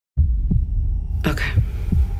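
Deep, low throbbing drone of trailer sound design that starts suddenly, with dull heartbeat-like thumps, and a brief brighter sound partway through.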